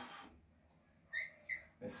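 Two short, high-pitched squeaks of a dry-erase marker on a whiteboard as two branch lines of a tree diagram are drawn.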